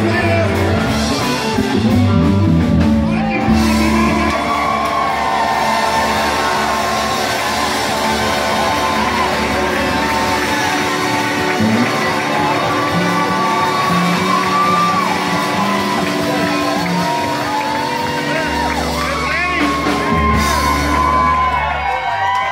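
Live rock band playing, with electric guitar and singing, and shouts and whoops from a crowd close by. The low bass notes drop out about halfway through and come back near the end.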